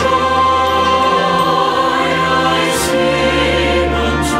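Mixed SATB church choir singing a sacred anthem in sustained chords, with instrumental accompaniment.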